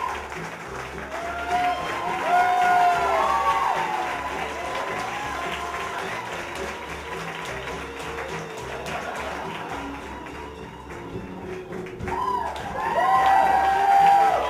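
Backing music with a steady bass line plays under audience applause, with cheers and whoops from the crowd rising about two seconds in and again near the end.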